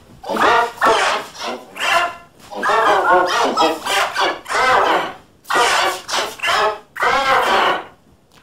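A child's voice crying out in about eight loud, wavering bursts, shrill and high-pitched, passed through the pitch-shifted 'G Major' edit effect.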